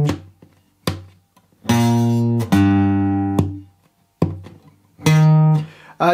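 Taylor steel-string acoustic guitar, capoed, playing a slow line of single picked low notes, each left to ring and fade before the next, with short silent gaps between them.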